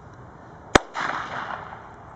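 A single sharp bang from a gundog dummy launcher firing a blank to throw a canvas dummy, about three-quarters of a second in, followed by a brief trailing noise.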